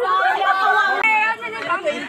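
People chattering, their voices overlapping, growing a little quieter after about a second and a half.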